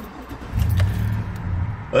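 Car engine heard from inside the cabin: a low hum that grows louder about half a second in.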